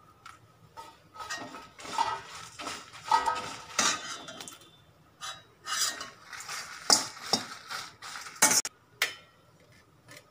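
A perforated stainless steel ladle stirring dry red chillies and curry leaves in a stainless steel kadai, scraping and clinking against the pan in irregular strokes. The stirring starts about a second in and stops near the end.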